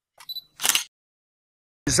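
A brief two-part click: a faint high tick about a quarter second in, then a short burst of noise just after half a second, otherwise silence.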